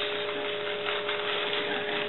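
Steady electrical hum with two constant tones over a background hiss: room tone, with no bark.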